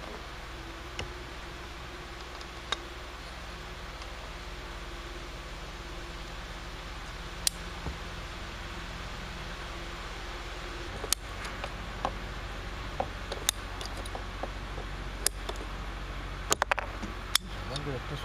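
Hand-squeezed PVC pipe cutter working through PVC pipe: a scatter of sharp clicks, a few at first and then coming more often in the second half as the cut goes through. The blade has gone dull, which makes the cut hard.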